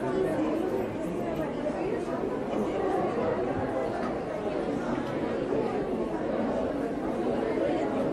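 Steady hubbub of many overlapping voices, indistinct chatter with no clear words, from shoppers and checkout staff in a busy supermarket.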